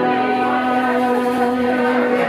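A live pagode samba group holding one long, steady chord at the end of a sung phrase, with hardly any percussion.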